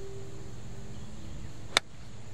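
Nine iron striking a golf ball off fairway turf, hit as a low punched 'stinger' shot: one sharp click about three-quarters of the way in.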